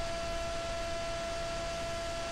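Steady hiss with a few faint, constant hum tones, the background noise of the recording, with no distinct event.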